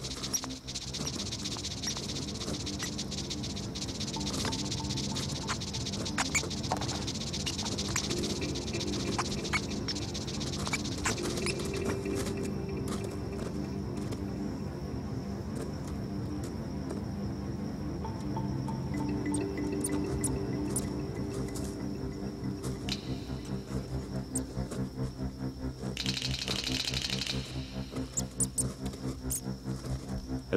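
Background music score: sustained low tones throughout, with a high shimmering layer that fades out about twelve seconds in and returns briefly near the end.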